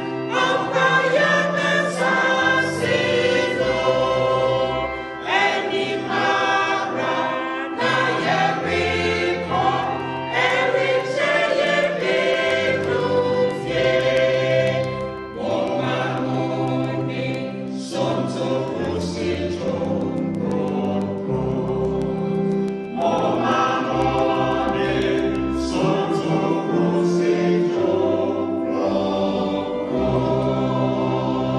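A mixed choir of men and women singing a hymn together in harmony, its sustained chords changing about every second or two.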